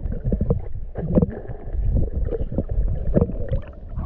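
Muffled water sloshing and bubbling around a camera held underwater, over a heavy low rumble broken by irregular short splashy crackles.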